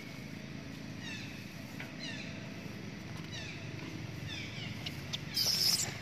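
Animal calls: a short, falling squeak repeated about once a second over a low steady hum, then a louder, harsh squeal shortly before the end.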